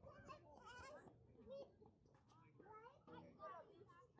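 Faint, distant voices of young ball players and spectators, high-pitched chatter and short calls overlapping one another around the field.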